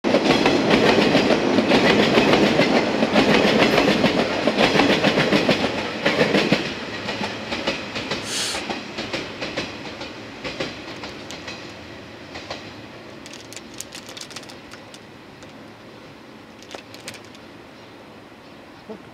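An electric train passes close by, its wheels rumbling with a rhythmic clickety-clack over the rail joints. About six seconds in it becomes much quieter and keeps fading as it moves away, with scattered distant wheel clicks. A brief high-pitched sound comes about eight seconds in.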